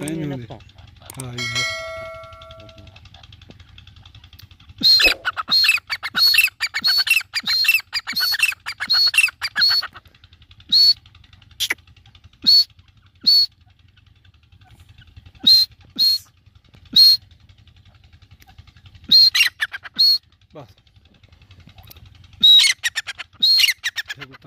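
A tame grey francolin (teetar) calling loudly: a rapid run of sharp, high repeated notes for about five seconds, then single and paired calls every second or two in short bursts. Near the start there is a brief electronic chime.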